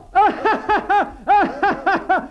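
High-pitched, delighted laughter: a rapid run of short 'ha' syllables, about five a second, each rising and falling in pitch.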